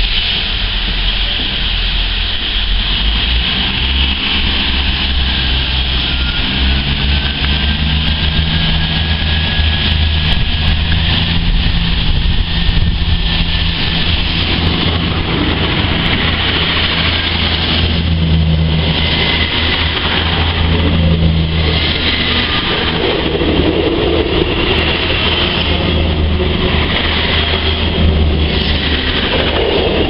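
Class 159 diesel multiple unit pulling out and passing close by, its underfloor Cummins diesel engines running under power with a steady deep drone that strengthens from about seven seconds in as the train comes alongside.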